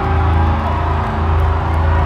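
Post-hardcore band playing live: a loud, bass-heavy mix with steady low bass and held guitar tones, recorded through a phone's microphone in the crowd.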